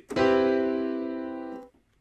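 A software piano chord in FL Studio, struck once, held for about a second and a half while fading slightly, then released abruptly. Its notes lie within the E minor scale.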